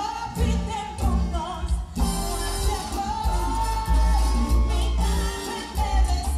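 Live band music with a lead vocal: a held, wavering sung melody over pulsing bass and hand percussion such as congas.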